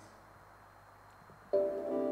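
After a quiet stretch, a keyboard chord starts suddenly about one and a half seconds in and holds steady, opening the next song.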